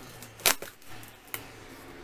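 Packing tape on a cardboard shipping box being slit and ripped open along the seam with a hand-held cutter: one loud sharp rip about half a second in, then smaller crackles and a short rip just past a second.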